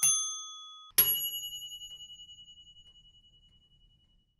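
Two bell-like dings: the first rings out and stops within the first second, and a second, higher ding about a second in fades with a fast wavering over about two seconds.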